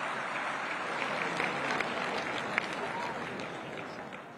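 Large audience applauding, the clapping easing off near the end.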